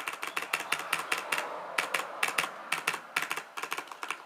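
Keys of a Corsair K70 mechanical keyboard pressed in a rapid, irregular run of sharp clicks: the Delete key tapped over and over to get into the BIOS as the PC boots.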